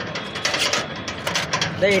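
Long knife shaving chicken off a vertical shawarma spit, scraping the meat and clinking against the metal ladle held beneath it in a quick, irregular run of strokes.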